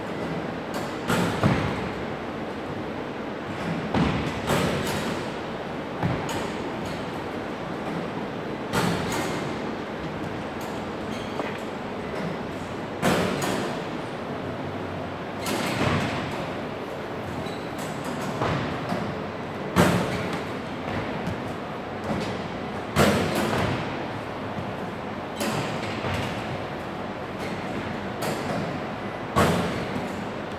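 Basketballs thudding off the rim, backboard and hardwood floor of an echoing gym, a knock every two to three seconds, over steady background noise.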